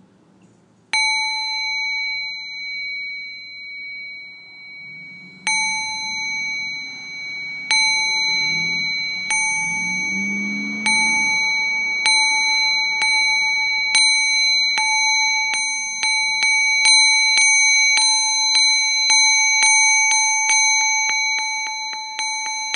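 A Buddhist altar bell (rin) is struck again and again, each stroke ringing on with the same clear, several-toned ring. The strokes are slow at first, a few seconds apart, then speed up into a fast run of strikes near the end.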